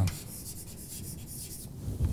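Chalk writing on a blackboard: faint, short, uneven scratching strokes as a word is written.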